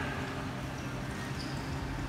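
Indoor pool ambience: water lapping gently against a floating ring buoy, over a steady low hum.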